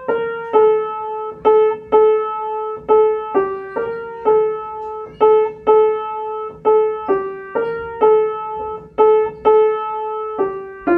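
Piano playing a slow, gentle melody in a minor key, one note at a time, with many notes repeated on the same pitch, about two notes a second.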